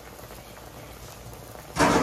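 Water boiling hard in a wok around a whole pomfret, a steady bubbling hiss. Near the end comes a short, loud burst of noise.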